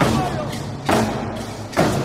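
Large wooden hand drums struck in a slow beat: three heavy strikes a little under a second apart.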